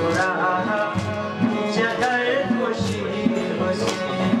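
Khowar folk music: a plucked Chitrali sitar and a harmonium over a steady drum beat, with a man singing a melody that glides up and down.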